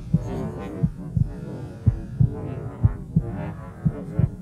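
Footsteps of a hunter walking over snow and dry grass, heard as dull thumps about two a second.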